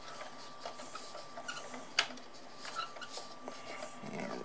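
Faint plastic clicks and scratches of a toy fire truck's fold-out stabilizer leg being handled, pushed back in and rotated up, with one sharper click about halfway through.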